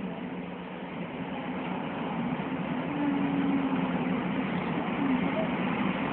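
Steady road and engine noise heard from inside a moving vehicle, growing louder about halfway through.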